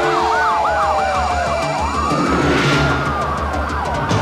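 Several police car sirens sounding at once: one in a fast yelp, another in a slow wail that falls, then rises and falls again, over a music bed.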